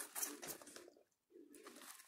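Soft plastic packing wrap crinkling as it is handled, with short low tones underneath. The sound cuts out completely for a moment just past a second in.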